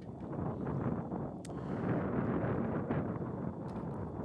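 Wind buffeting the microphone: an uneven low rush of noise, with one sharp click about a second and a half in.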